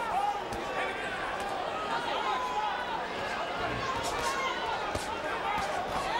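Boxing arena crowd noise with scattered shouts from the audience, and a few dull thuds of gloves landing as the two boxers trade punches on the inside.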